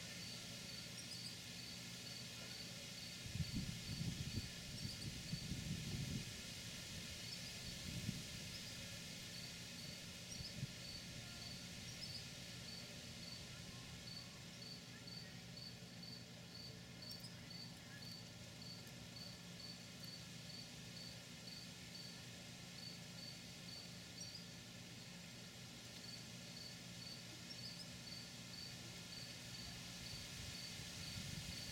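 A cricket chirping steadily in short high pulses, about two to three a second, with a couple of brief pauses. A low rumble rises for a few seconds near the start, with a shorter one a little later.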